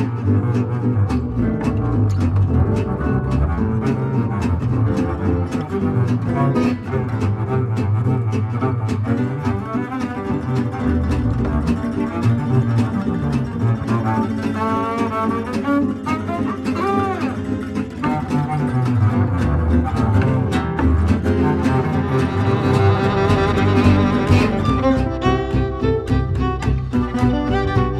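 Acoustic jazz instrumental in which the double bass carries the lead line over steady guitar chord strumming, with melodic string lines rising above near the end.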